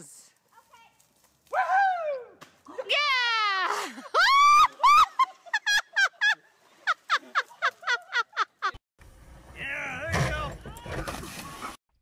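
Onlookers shrieking with high, swooping voices, then laughing in quick short bursts, several a second. Near the end a stretch of rough noise comes in under the voices.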